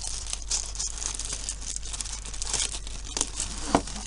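A pink plastic cosmetic bag crinkling and rustling as it is unzipped and handled, with a sharp click near the end.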